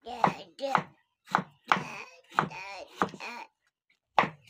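Kitchen knife chopping a green bell pepper on a wooden cutting board, a series of sharp strikes, with a person's voice sounding over it.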